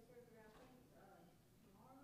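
Faint speech: a voice well off the microphone, talking in short phrases.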